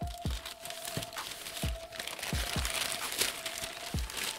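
Brown kraft packing paper crinkling and rustling as it is pulled off a boxed item, over background music with a low thumping beat and a held tone.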